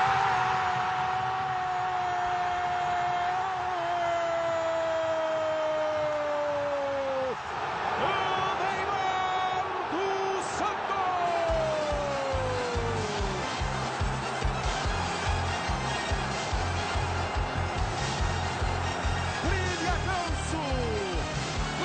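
A TV football commentator's drawn-out goal shout, held for about seven seconds over a cheering stadium crowd, then a second long shout falling in pitch. Music with a steady beat comes in about twelve seconds in.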